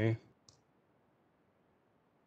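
The end of a man's spoken word, then a single short computer-mouse click about half a second in, followed by faint room tone.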